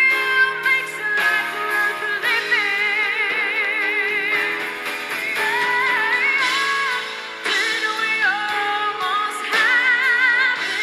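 A woman singing lead with a live band, holding long notes with a wide vibrato over the band's accompaniment.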